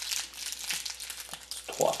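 Plastic candy wrapper crinkling irregularly as wrapped toffees are handled and unwrapped by hand, with a short word near the end.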